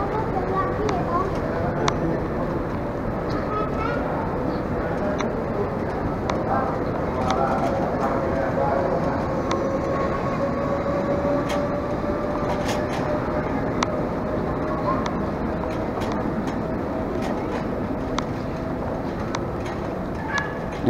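Airport luggage trolley being pushed along a carpeted floor, a steady rolling rattle with scattered small clicks and a faint thin whine, under background voices of passing travellers.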